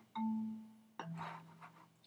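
Software marimba patch from Logic's EXS24 sampler playing a bass line: two low mallet notes about a second apart, the second one lower, each fading away. These are the notes of a fretless electric bass part, now played with a marimba sound.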